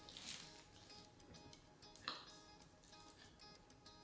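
Faint background music with steady held tones, and a soft crunch about two seconds in as a knife cuts through a baked puff-pastry crust.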